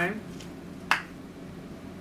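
A single sharp click about a second in: the cap of a plastic tube of hand cream snapping open.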